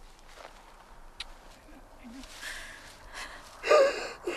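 A person's voice: a breathy sound about halfway through, then a short, loud, high-pitched vocal sound near the end, with quiet in between.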